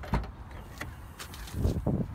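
Rear liftgate of a 2014 Toyota RAV4 being unlatched and swung open. There is a knock of the latch, a few light clicks, then a low thump near the end as the gate goes up.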